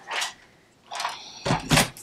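A Stampin' Trimmer paper cutter being set down on a tabletop, with a few knocks and handling sounds that get louder in the second half, along with a rustle of card stock.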